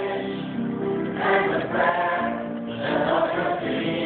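A mixed choir of young men and women singing in harmony, holding long chords that swell and change about once a second.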